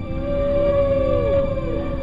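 Humpback whale call: one long held tone that slides down in pitch about one and a half seconds in, over soft background music.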